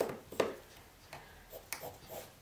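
Light handling sounds of a pencil and steel ruler being tapped and shifted on a t-shirt laid on a table: two sharper clicks in the first half second, then a few fainter taps.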